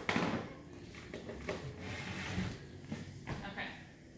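A small soft exercise ball being slapped and caught by hand. The loudest hit comes right at the start and lighter knocks follow later, with quiet voices in between.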